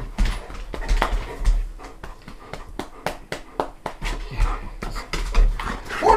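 A dog close by, with a run of irregular sharp clicks and knocks.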